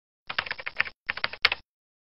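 Computer keyboard typing sound effect: two quick runs of key clicks, each about half a second long.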